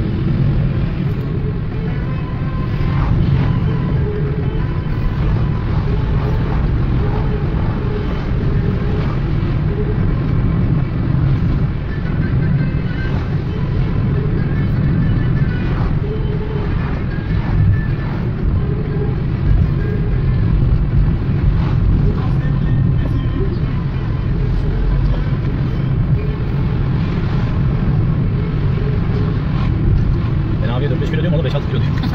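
Steady low rumble of engine and tyre noise heard inside a car's cabin while driving on an ordinary road.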